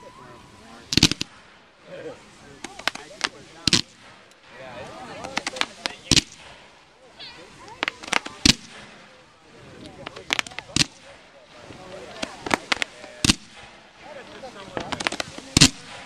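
Fireworks display: aerial shells bursting in a series of sharp bangs at irregular intervals, some in quick pairs or clusters of two or three, about fifteen in all.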